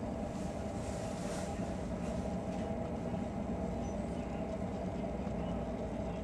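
Steady drone of a cruise ship's machinery, with a few even hum tones under a rushing of wind.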